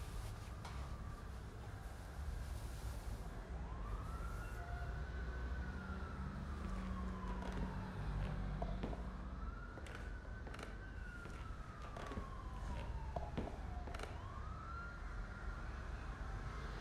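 A siren wailing, rising quickly in pitch and falling slowly, a cycle about every five to six seconds, starting a few seconds in, over a steady low rumble.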